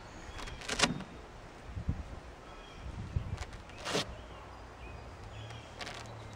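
Velcro hook-and-loop strip on a felt car canopy being pulled apart and re-stuck while the canopy is tightened: two short tearing rasps, the first about a second in and the second about four seconds in, with soft handling knocks between.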